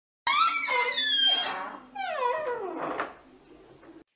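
An animal crying out twice, each a long high call that falls in pitch; the first starts just after the beginning and the second ends about three seconds in.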